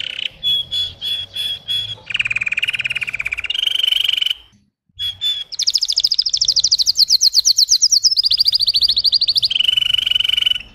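A red-headed canary singing: a run of short repeated notes, then fast trills that shift to a new pitch every second or two. There is a half-second break a little before the midpoint.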